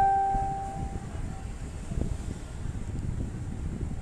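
A single ring-like tone, struck just before and fading out over the first second, over a steady low rumble of background noise.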